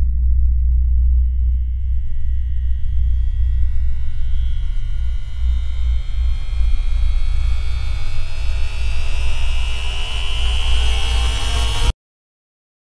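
Ambient electronic drone score: a deep, steady low rumble under thin high tones that slowly rise in pitch, building in brightness and hiss until it cuts off suddenly at the end.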